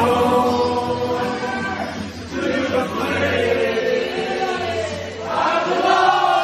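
Choir-like singing in long held phrases over a low steady drone, as music on the soundtrack.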